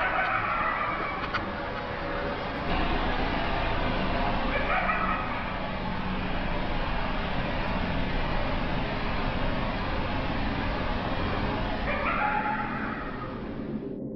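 High-pitched, laughter-like calls from deep in the woods, in three short bursts, which could be foxes or coyotes. They sound over a steady hiss.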